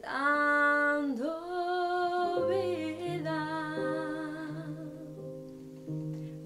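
A woman singing a song, opening with a long held note with vibrato that dips in pitch about a second in and carries on in further phrases, over guitar accompaniment with a lower bass part joining about two seconds in.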